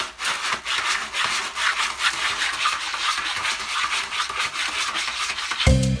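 A cat digging in a plastic tray of pellet cat litter: rapid, irregular scratching and scraping strokes as the pellets are raked about. Upbeat music with marimba cuts in just before the end.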